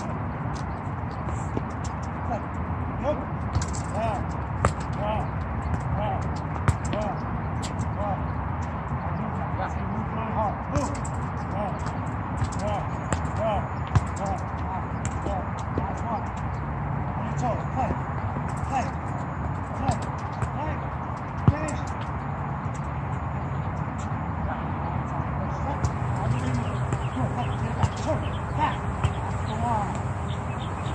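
Soccer balls being kicked and bouncing on a hard outdoor court: scattered sharp thuds over a steady low rumble, with voices faintly in the background.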